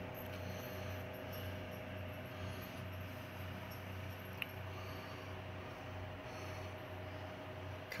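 Steady low background hum with a faint even hiss, and one small click about halfway through.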